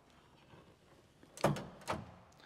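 Boot lid of a 1967 Maserati Ghibli being unlatched and opened: two short metallic clunks about half a second apart.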